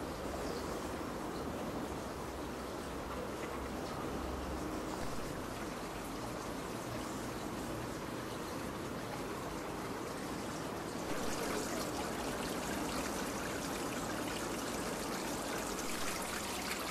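Steady rushing outdoor noise with no distinct events, growing brighter and a little louder about eleven seconds in.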